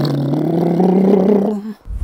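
A man imitating a car engine with his voice: one drawn-out 'vroom' that rises slowly in pitch for about a second and a half, followed by a short rush of noise at the very end.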